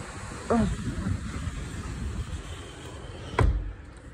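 Steady noise of heavy rain pouring down, heard through an open window screen. A single sharp knock sounds near the end.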